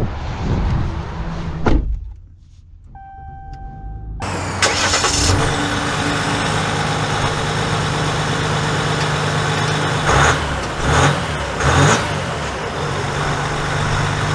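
A pitched chime beeps, then the 2023 Ram 1500's 3.0-litre EcoDiesel turbodiesel V6 starts suddenly about four seconds in. It settles into a steady diesel idle, with a couple of brief louder swells later on.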